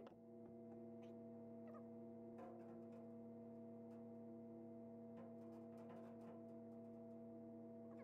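Near silence: a faint steady hum, with a few light clicks and taps as a power window regulator is handled and fitted against a steel truck door's inner panel.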